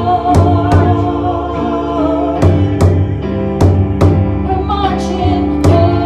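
Live worship song: a woman singing over a stage keyboard, with a steady drum beat of about two to three hits a second.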